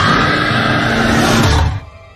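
Loud horror-trailer sound-design swell: a dense wall of noise with a steady high tone that slides up at its start. It cuts off suddenly near the end into near quiet.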